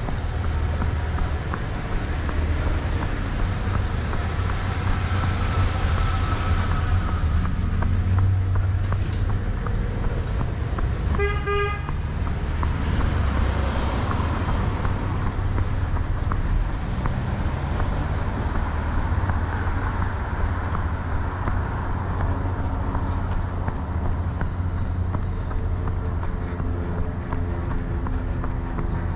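A vehicle horn gives one short toot about eleven seconds in, over steady road and traffic noise, with vehicles passing close by.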